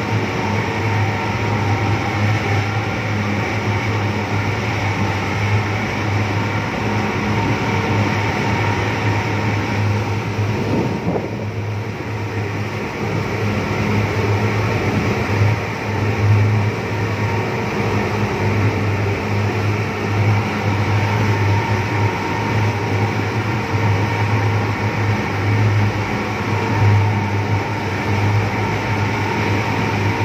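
A motor boat's engine running steadily under way, a constant drone mixed with the rush of water from the wake along the hull.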